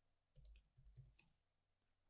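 Faint computer keyboard typing: a quick run of about half a dozen soft key clicks, a word being typed, in the first half, then quiet.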